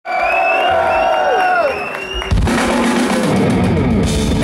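Heavy metal band playing live through a PA. The song opens with a held, sustained note that slides down in pitch, then the full band with drums comes crashing in about two seconds in.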